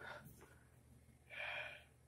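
A person breathing close to the microphone, faint: a short breath at the start, then a longer breath of about half a second, about a second and a quarter in.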